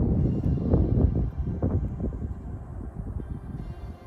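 Wind buffeting the microphone: a low, gusty rumble that eases off over the few seconds.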